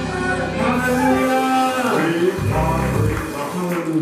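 Worship singers holding long, sustained notes that bend and glide in pitch, over low sustained instrumental notes that drop out about a second in and return briefly later.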